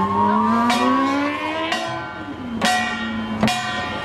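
Slow Korean pungmul percussion, a drum-and-gong stroke about once a second with a ringing metallic tone left hanging after each. Over the first two seconds a car engine's rising note, as it accelerates, runs beneath the strokes.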